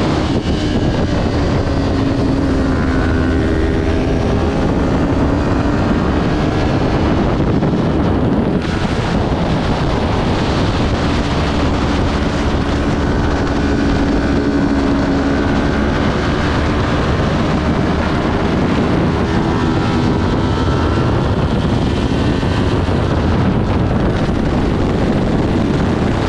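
Kawasaki Ninja 400's parallel-twin engine running hard at racing speed, its pitch rising and falling as the revs change through the corners, under heavy wind rush on the bike-mounted microphone.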